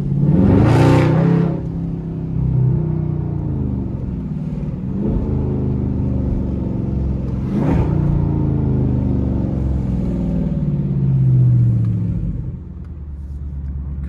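Dodge Charger Scat Pack's 392 (6.4-litre) HEMI V8 heard from inside the cabin, accelerating hard and easing off several times, its pitch rising and falling with each pull. It is loudest about a second in and quieter near the end as the car slows.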